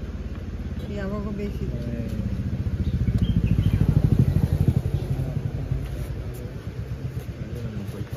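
Motorcycle engine running close by with a rapid low pulse, getting louder to a peak about four seconds in and then fading, with brief voices over it.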